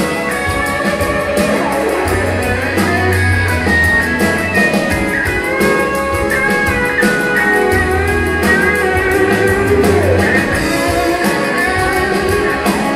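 A live band playing an instrumental passage: an electric guitar plays a melodic line over bass and a steady drum beat.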